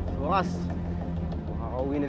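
A person's voice: a short vocal sound, then speech beginning near the end, over a steady low hum.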